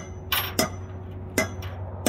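Several sharp metallic taps, irregularly spaced, like a hammer striking steel, while a new bearing race is fitted to a trailer wheel hub. A steady low hum runs underneath.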